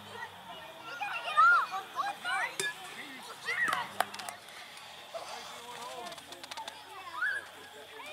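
Children's voices calling and chattering without clear words, in short high-pitched bursts that come loudest about a second and a half in and again near the middle, with a couple of sharp clicks.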